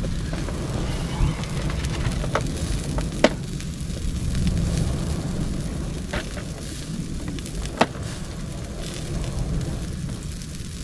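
Small wood fire burning, with four sharp pops spread through it over a steady low rumble.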